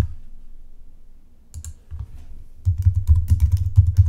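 Typing on a computer keyboard: a quick run of key clicks starting about a second and a half in, with low thumps under the later keystrokes.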